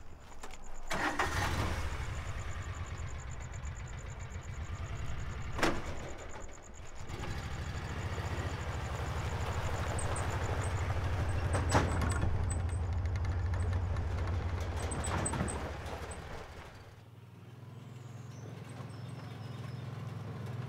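Side-by-side utility vehicle's engine starting about a second in and then running steadily, with a couple of sharp knocks along the way. The engine sound drops away near the end.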